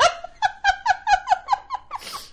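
A person's high-pitched giggle: a quick run of about nine short laugh pulses, roughly five a second, each dipping slightly in pitch.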